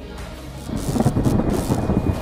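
Deep, thunder-like rumbling sound effect swelling up about two-thirds of a second in, the build-up of a channel logo intro sting.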